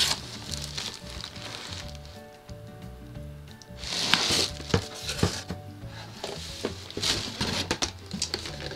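Background music, with cardboard boxes being handled over it: a scraping rustle about four seconds in as a doll box is slid out of a cardboard shipping carton, a couple of sharp knocks just after, and more rustling near the end.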